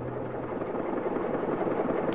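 Engine of an old motor car, the Ford Model T of the story, running steadily as it drives along the road, slowly growing louder.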